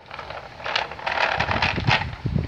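A wooden push-along baby walker cart loaded with wooden blocks rolling over a concrete path, its wheels rumbling and the blocks rattling, with irregular wind buffeting on the microphone.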